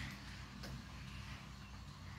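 Quiet room tone with a steady low hum, and two faint ticks about two-thirds of a second apart.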